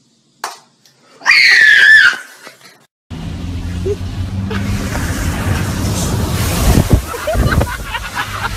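A match struck once, then a loud, high-pitched scream that falls in pitch and lasts under a second. Then a car driving through deep standing water, with a steady hum under rushing and splashing water that surges loudest about two-thirds of the way in.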